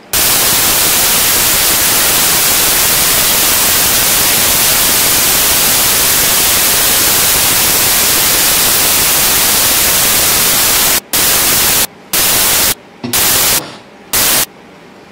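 Loud, steady static hiss, a fault in the microphone audio feed. It switches on abruptly, then cuts out and back in several times in short bursts near the end.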